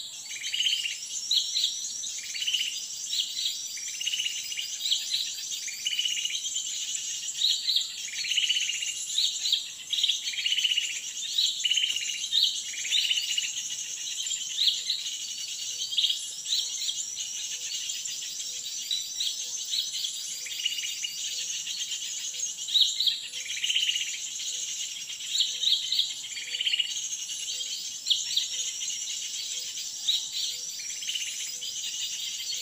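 Small forest birds chirping and calling in short repeated phrases over a steady high insect drone. A faint soft tick repeats about once a second from about halfway through.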